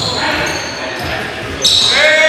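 Basketball being dribbled on a hardwood gym floor, with sneakers squeaking and players' voices echoing in the hall; a sharp high squeak starts near the end.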